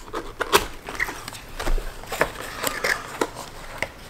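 Cardboard product box being opened by hand: the lid and flaps scrape and rustle, with a scatter of sharp cardboard clicks and taps, the strongest about half a second in.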